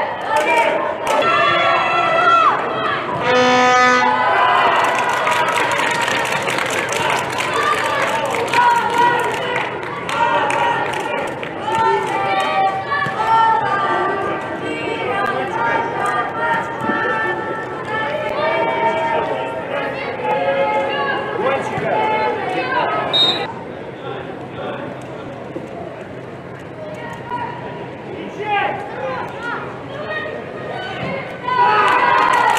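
Young players and spectators shouting and calling out together after a goal, their voices echoing in a large indoor hall. The voices are loudest in the first seconds and grow quieter after about twenty-three seconds.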